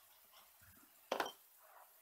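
A pencil set down on the paper-covered table after writing: one short knock about a second in, with a faint rustle just before it.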